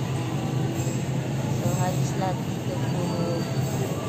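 Steady low hum of a supermarket's open refrigerated display case and store machinery, with faint voices in the background.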